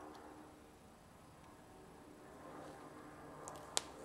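Quiet room tone with a faint steady hum. Near the end there is one sharp click as the drill sharpener's chuck is handled.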